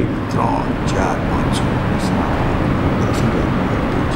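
A marker pen writing on a whiteboard, a handful of short, scratchy strokes, over a steady, loud background noise.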